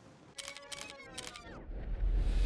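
Camera shutter clicking several times in quick succession, followed near the end by a low rumble swelling up.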